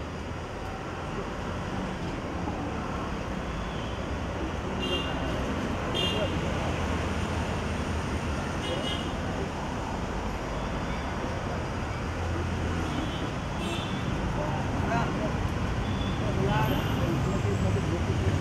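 Street traffic noise, a steady low rumble of passing vehicles that slowly grows louder, with indistinct voices murmuring close by.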